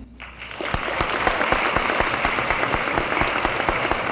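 Audience applauding, the clapping swelling in over the first half-second and then holding steady.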